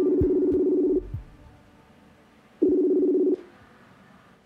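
Video call ringing on a computer: two long, steady low beeps with a slight pulsing quality, the second starting about two and a half seconds in.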